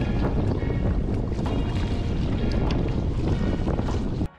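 Wind buffeting the camera microphone on a kayak on open water: a loud, steady, low rumble.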